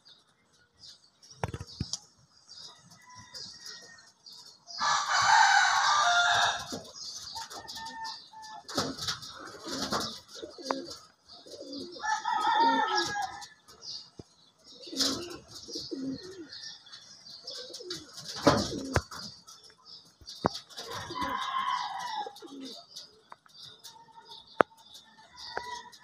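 Rock pigeons cooing while they peck and walk on a corrugated metal roof, with sharp taps and clicks on the metal. A rooster crows loudly about five seconds in and crows again more briefly near the middle and toward the end.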